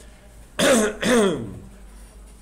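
A person coughing twice in quick succession, clearing the throat, about half a second in.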